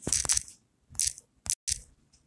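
Short bursts of crackling, rustling handling noise close to a phone's microphone, four or five in quick succession, with a brief moment where the sound cuts out completely.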